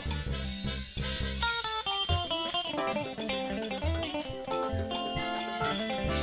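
Live band playing an instrumental passage: a horn section of trumpet, trombone and saxophones playing a melody over hand drums and bass.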